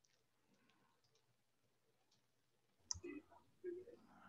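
Near silence broken by a few faint computer mouse clicks, with a sharper click about three seconds in.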